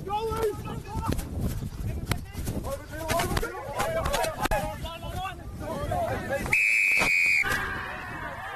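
A rugby referee's whistle gives one long, steady high blast about three-quarters of the way through, stopping play after a tackle. Before it, players shout over the ruck.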